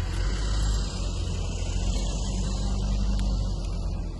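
Steady low rumble with a hiss above it, typical of wind buffeting a handheld camera's microphone outdoors.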